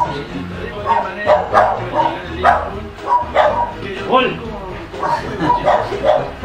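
A dog barking repeatedly, short barks coming roughly twice a second with a brief gap partway through.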